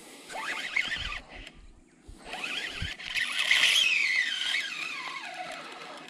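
Baitcasting reel whining under load as a hooked barramundi fights, the pitch rising and falling, then a long falling whine as the fish's run slows.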